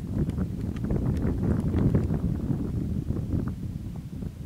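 Wind blowing on the microphone: a rough, uneven low rumble with faint scattered ticks.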